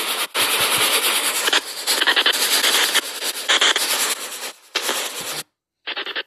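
Phone spirit-box app sweeping through radio frequencies, playing loud static hiss chopped into short blocks a fraction of a second long. The static cuts off suddenly near the end as the app's noise gate is switched on, leaving one short blip.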